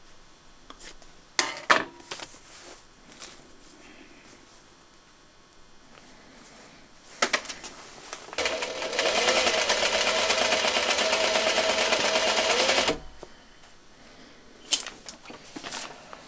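Juki sewing machine running fast and steadily for about four and a half seconds, a rapid even run of stitches, starting a little past halfway and stopping abruptly. Before it come a few short, sharp clicks.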